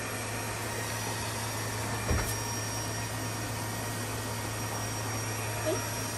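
Battery-powered bazooka bubble gun's electric fan motor whirring steadily as it blows out a stream of bubbles, with a single brief knock about two seconds in.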